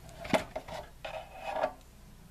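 Plastic HO-scale engine shed structure lifted by hand off the model layout: a sharp click as it comes free about a third of a second in, then a few light knocks and rubbing of plastic parts.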